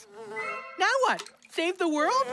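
Cartoon housefly-wing buzzing sound effect, a steady buzz with a wavering pitch at first, followed by gliding pitched sounds as the buzz goes on.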